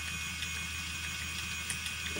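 Phoenix electric motor spinner running steadily, its flyer and bobbin turning as flax is spun: a steady hum with a faint high whine.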